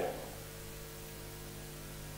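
Steady low electrical hum with a faint hiss, as from a microphone and sound-system line, in a pause in a man's speech. The last word of the speech fades out at the very start.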